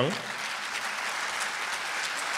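A large audience in a big hall applauding: dense, steady clapping that breaks out right after a spoken announcement and keeps up at an even level.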